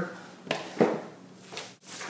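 Paper and a cardboard record sleeve being handled: a sharp tap about half a second in, then a short, louder rustle.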